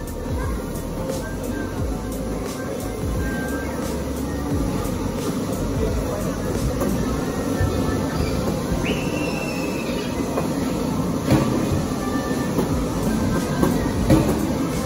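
Ball-pit suction tower running, its blower pulling plastic balls up the central tube: a steady rushing rumble with many small irregular clicks of balls knocking together.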